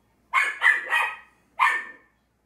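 Dogs barking in the house: about four short, sharp barks in quick succession, the last one a moment after the others.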